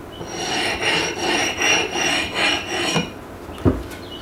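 Ceramic hone of a Work Sharp Field Sharpener stroked quickly along the steel edge of a double-bitted axe, about three rubbing strokes a second, with a high ring from the axe head. This is the fine honing stage that takes the edge toward razor sharpness. A single knock near the end.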